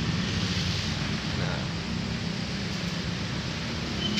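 Steady road traffic noise from passing vehicles: a continuous low rumble with a hiss over it.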